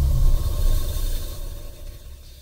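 Deep bass rumble of a title-card transition sound, fading away steadily over the two seconds.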